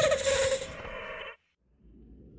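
A drawn-out, pulsing pitched sound effect that fades and stops a little over a second in, leaving only a faint low hum.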